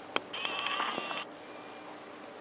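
A click, then a video camera's zoom motor whirring for about a second as the lens zooms in.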